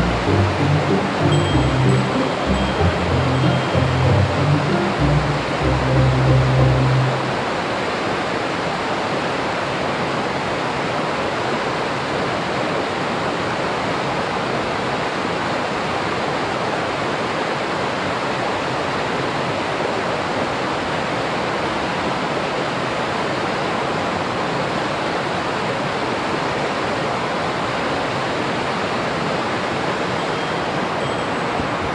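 Small mountain-stream waterfall pouring into a rock pool: a steady rush of falling water. For the first seven seconds or so a low, uneven rumble sits under it.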